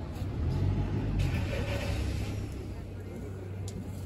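Street ambience with a motor vehicle passing, swelling in the first half and fading away after about two and a half seconds, with voices in the background.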